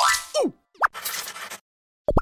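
Cartoon sound effects: a rising boing-like glide, then a quick falling glide and a short rising zip, followed by a brief hiss that cuts off before the end.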